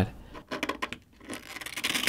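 Razor blade scraping and cutting through the thin copper wall and mesh wicking layer of a phone's vapor chamber: a run of irregular scratches and small clicks.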